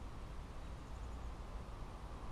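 Wind buffeting the camera's microphone: an uneven low rumble with a faint noisy hiss.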